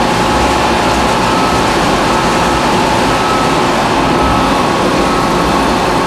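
Vincent screw press running steadily while pressing inedible egg, discharging dry press cake: a continuous mechanical drone with faint steady whining tones.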